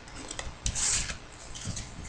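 Trading cards being handled, sliding and rubbing against one another: a few light clicks, then a brief swish about a second in and smaller rustles after it.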